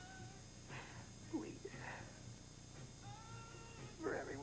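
A woman crying: high, drawn-out whimpering wails, one at the start and another about three seconds in, with sobbing breaths between.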